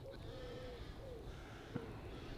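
A bird calling faintly in the open air: a few short, low, arching notes repeated one after another, with a single faint tap near the end.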